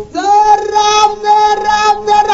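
A high singing voice holds one long, steady note in a song, coming in just after a brief pause.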